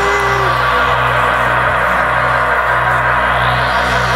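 Live band playing a slow electronic intro: a sustained synthesizer drone over a low note that repeats steadily.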